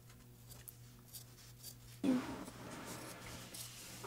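Scissors cutting through craft felt: a few faint, scattered snips over a low steady hum.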